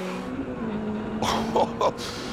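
Supercharged Ariel Atom's engine holding a steady note as the car laps a test track.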